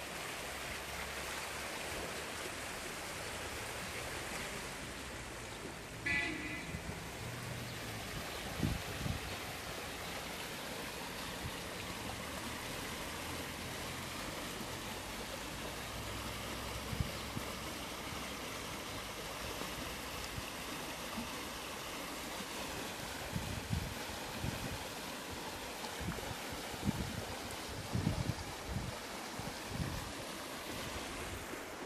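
Water rushing steadily through a breach in a collapsed concrete irrigation canal wall, churning over the fallen rubble. Occasional low thumps on the microphone, mostly in the second half.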